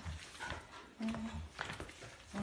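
Toddler's squeaky shoes squeaking with the steps: short, even-pitched chirps, one clear one about a second in, among faint footfalls.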